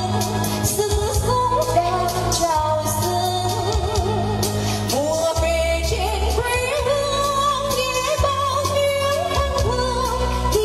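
A woman singing a Vietnamese song into a microphone, holding long notes with vibrato, over an amplified musical accompaniment with steady bass and percussion.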